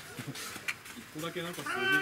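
A man's long, high-pitched shout on the ball field, starting about a second and a half in and loudest at the end, with a short click a little before it.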